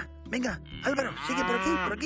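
A cow's moo played as a sound effect: one long call starting a little under a second in and ending near the end, over the tail of light, jingly music.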